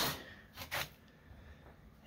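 Quiet room tone with one short breath about three quarters of a second in.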